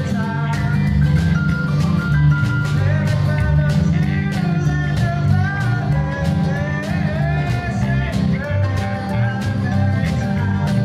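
Live band music played with a prominent, heavily bass-boosted electric bass guitar line, fingered on a four-string bass. Regular percussion hits and a gliding melody line sit above it.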